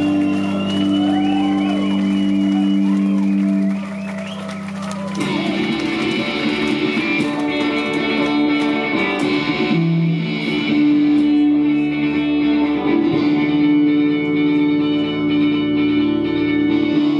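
Live rock band with amplified electric guitars played loud through a PA. A held chord with wavering lead-guitar notes over it rings for about four seconds and dips. Then the band comes back in with fuller strummed guitar chords from about five seconds in.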